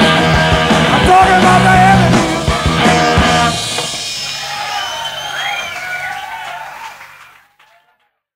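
Live rock band with electric guitar playing the end of a song: the full band until about three and a half seconds in, then a quieter stretch of ringing, bending guitar notes that fades out to silence near the end.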